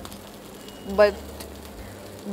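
Metal kitchen tongs clicking lightly twice as chicken pieces are lifted from a frying pan into a stainless steel tray, over a faint steady hiss from the pan.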